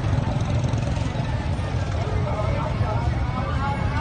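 A steady low rumble, with people talking faintly in the background.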